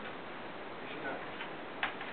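Steady room hiss with faint, indistinct voices and one sharp click near the end.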